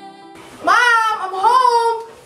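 A high voice holding two long, drawn-out notes with a short break between them, the pitch bending as each note is held.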